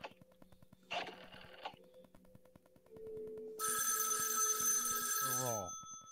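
A rotary desk telephone's electromechanical bell ringing once, for about two seconds, starting a little past the middle.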